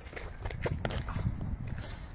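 Quick, light footsteps of trainers on a rubber running track during an agility-ladder footwork drill, about four or five taps a second.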